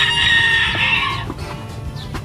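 A rooster crowing once, a loud, drawn-out call that breaks off a little over a second in.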